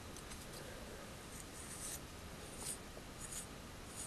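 Faint brushing strokes through a doll's curly hair: several short, soft scratchy swishes.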